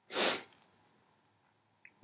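A single short, sharp breath through the nose, lasting under half a second.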